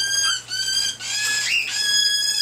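Cockatiel calling: a run of shrill calls at a steady pitch, about four in two seconds, some bending up at the end.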